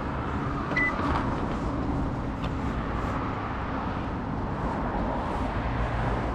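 Steady low rumble with a single short electronic beep about a second in.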